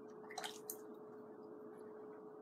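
A few brief dry clicks about half a second in as a drawing pencil is handled and lifted away from the paper, over a faint steady hum.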